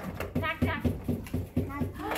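Voices speaking in quick short syllables in a small room: only speech, with no other distinct sound.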